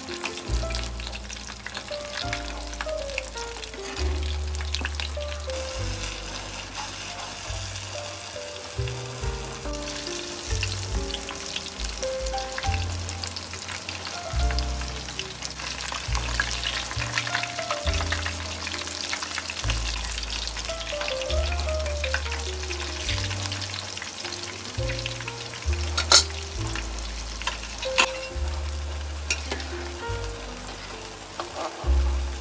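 Oil sizzling steadily as battered pieces shallow-fry in a pan, with a spatula scraping and stirring an onion masala in an iron kadai. Two sharp knocks of the utensil against a pan come near the end, over soft background music.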